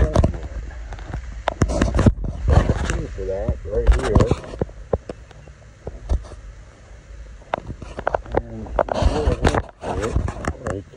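Rumble and scattered knocks from a phone being handled close to its microphone, with a man's voice murmuring unclear words twice, about four seconds in and near the end.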